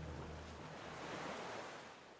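Ocean surf: a single wave washing in, the hiss swelling about a second in and fading away near the end. The last low notes of ambient music die out at the start.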